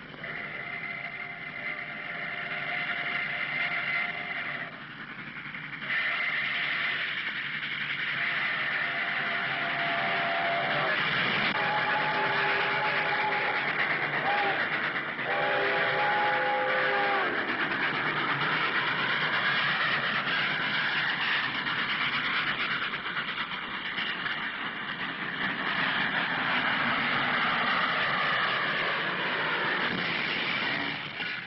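Steam locomotive whistle giving a series of long blasts, about six, some held for several seconds. As the locomotive comes up and runs past close by, a loud, steady rushing rumble builds and lasts to the end.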